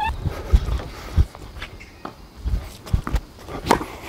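Tennis ball bounces and court-shoe footsteps on a hard court, heard as a handful of separate thuds, then a racket striking the ball on a one-handed backhand shortly before the end.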